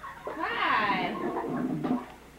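A baby squealing: one long high squeal that starts about a third of a second in and slides down in pitch, then runs on into a lower vocal sound near the end.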